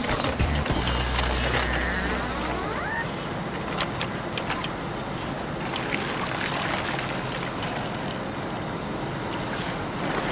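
Trawler's engine running and water washing around the boat as the trawl net is hauled aboard, with a few knocks from gear on deck about four seconds in, under background music.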